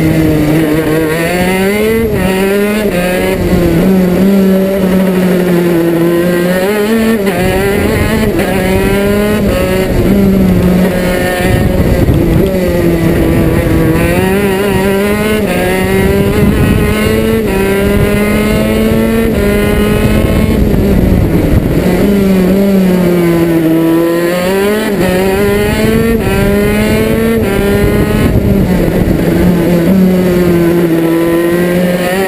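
Single-cylinder two-stroke racing kart engine under hard load, recorded onboard. Its note climbs as the kart accelerates out of each corner, then drops off under braking, over and over through the lap.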